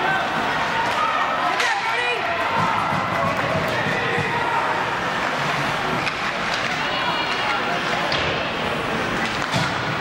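Many overlapping voices of spectators and players calling out in an ice rink, steady throughout, with a few sharp knocks from sticks and puck on the ice.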